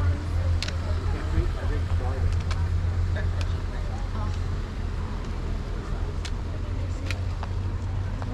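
A few sharp, scattered clicks of trekking pole tips striking tarmac, over a steady low rumble and faint background voices.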